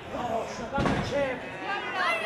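A single heavy thud of a wrestling impact just under a second in, over crowd voices and chatter in the hall.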